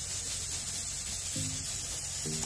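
Steady background hiss of the recording, with a brief low hum of voice about one and a half seconds in.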